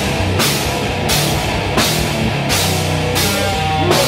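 Death metal band playing live: distorted electric guitars hold low chugging notes over a drum kit. A cymbal crashes on a steady beat about once every 0.7 seconds.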